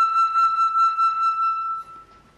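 Concert flute holding one long high note with a pulsing vibrato, dying away just before the end.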